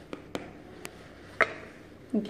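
About four light taps and clicks of kitchen utensils and plastic craft items handled on a table; the last, about one and a half seconds in, is the loudest, a short clink.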